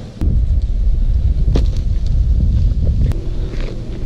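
Wind buffeting the camera microphone: a loud, uneven low rumble that sets in suddenly, with a few sharp clicks over it.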